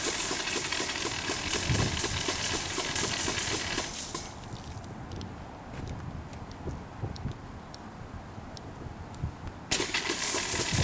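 Compressed-air foam backpack sprayer discharging pepper-spray foam through a straight-stream nozzle: a loud hiss of air and foam for about four seconds that then cuts off, and a second burst that starts just before the end.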